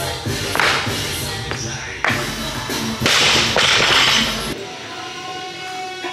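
Background music, its bass dropping out about three-quarters of the way through, with several short noisy hits over it.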